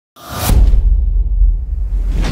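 Intro logo sound effect: a whoosh that swells to a peak about half a second in, over a deep bass rumble.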